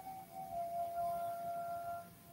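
A faint, steady, sustained musical tone with a few overtones, like soft meditation background music or a singing bowl. It stops abruptly at the end.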